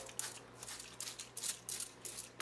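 Hand-held trigger spray bottle squirting water onto a plant's leaves: a quick run of short hissing sprays, about four a second.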